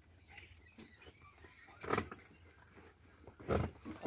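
Water buffalo hauling a loaded cart, giving two short, rough grunts or breaths about a second and a half apart, the second louder.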